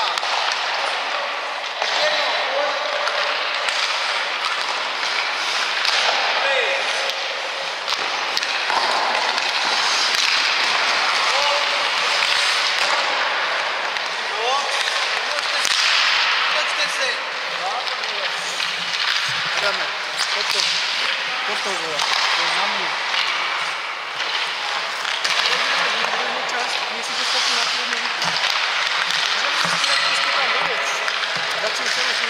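Ice hockey practice on the rink: a steady scraping wash of skate blades on the ice, broken by many sharp cracks of sticks and pucks, with indistinct voices underneath.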